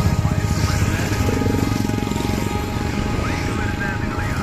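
Motorcycle engines running as a line of bikes passes close by, their rapid low pulsing mixed with background music.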